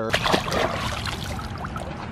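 Water running into a Water Wubble reusable water balloon through its nozzle as it fills: a steady rushing hiss that starts suddenly and slowly grows quieter.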